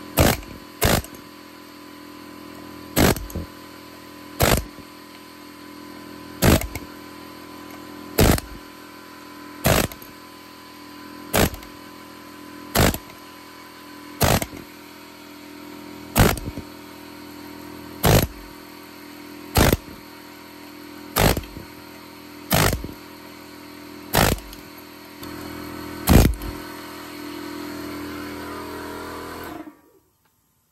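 Pneumatic air hammer with a punch bit, driving out a rubber differential mount. It fires in short bursts of rapid hammering, about one every one and a half to two seconds, some seventeen in all, over a steady hum.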